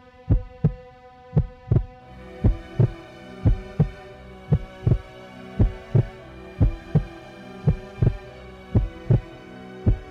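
Dramatic soundtrack with a heartbeat-style double thump, one pair about every second, under a sustained drone chord that fills out about two seconds in.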